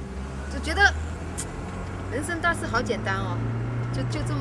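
Low, steady rumble of a car's engine and road noise heard from inside the moving car's cabin, the engine note rising about three seconds in, under a woman's speech.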